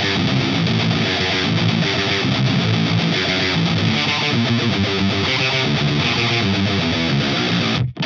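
Heavily distorted electric guitar chugging riffs through an Orange Terror Stamp 20-watt pedalboard amp head into an Orange 4x12 cabinet, played straight in without a boost pedal. The dense riffing cuts off sharply just before the end, and a new struck chord follows.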